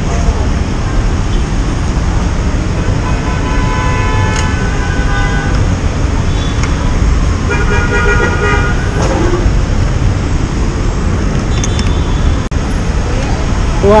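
Vehicle horns honking twice, each toot a second or so long, over a steady low rumble of idling engines and traffic.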